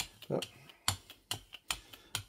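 Hand brayer rolling heavy-bodied white paint across a gel printing plate, with a few sharp clicking taps roughly every half-second as the roller works over the tacky surface.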